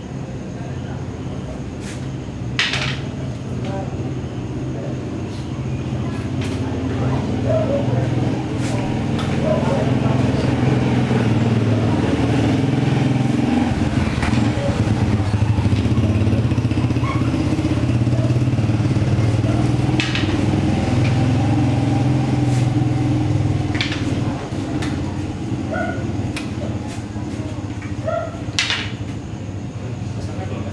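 A steady low engine rumble, like a motorcycle running, swelling through the middle and easing off near the end. A few sharp clacks cut through it, the sound of rattan sticks striking in the drill.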